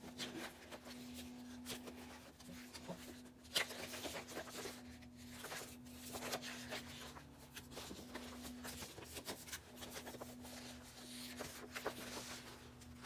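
Paper pages of spiral-bound sketchbooks being flipped and handled, with irregular rustles, flaps and soft clicks throughout. A faint steady hum runs underneath.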